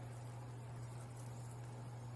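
Quiet room tone with a steady low hum and no distinct sound.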